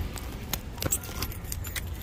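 A handful of irregular light clicks and clinks, like small hard objects knocking together, over a steady low rumble.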